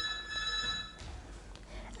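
A faint, steady high-pitched electronic tone, several pitches sounding together, that cuts off suddenly about halfway through; faint room tone follows.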